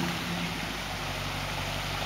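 Off-road four-wheel-drive engine running steadily at a low note that weakens slightly early on, under a steady hiss.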